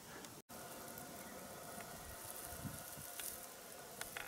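Faint, steady outdoor background hiss with no distinct sound event, broken by a brief dropout about half a second in.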